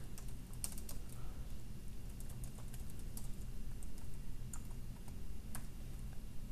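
Typing on a computer keyboard: quiet, irregular keystrokes as a line of code is entered.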